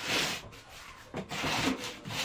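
A mattress rubbing and scraping against its wooden bed frame as it is shifted and lifted by hand: a short scrape at the start and a longer one just past halfway.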